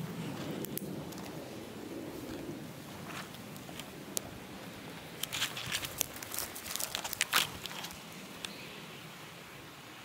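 Faint crackling and rustling of a small fire of thin twigs, with a cluster of sharp crackles and clicks about halfway through before it quietens. The flame fails to take hold because the wood is too wet.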